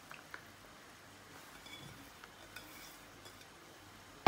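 Faint, soft sounds of a chopped pepper and tomato mixture being tipped from a bowl onto cooked spaghetti, with a few light clicks.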